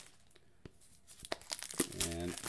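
Plastic packaging crinkling as a shrink-wrapped cardstock GM screen is handled against bubble wrap in a cardboard box: a few short, sharp crackles and rustles.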